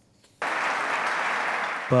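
An audience clapping. It starts abruptly about half a second in and holds steady until a man's voice comes in near the end.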